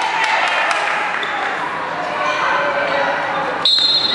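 Players and spectators shouting in an echoing sports hall as dodgeballs are thrown and bounce off the wooden floor. Near the end, a referee's whistle sounds with a steady high tone.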